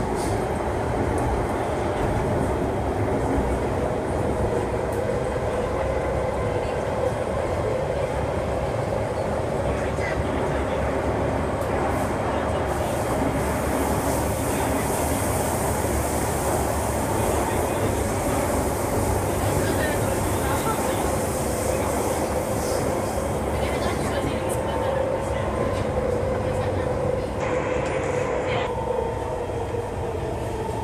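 Singapore MRT East-West Line train running, heard from inside the carriage: a steady rumble with a steady hum.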